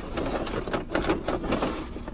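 Paper takeout bag rustling as a hand rummages through it, with irregular crinkles.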